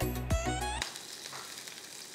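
Background music with a beat that cuts off under a second in, leaving the steady sizzle of chopped green chillies frying in hot ghee with cumin seeds.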